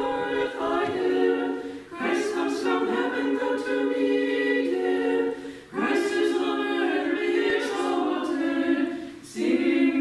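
A small choir singing Orthodox liturgical chant a cappella, in long held phrases, with brief pauses for breath about two, six and nine seconds in.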